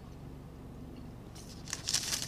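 A steady low hum, then about a second and a half in a short run of crackly, close-up chewing of a mouthful of pot roast sandwich meat.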